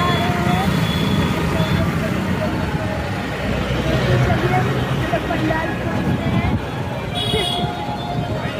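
Steady road and traffic noise heard from a moving motor scooter, with the riders' voices now and then over it.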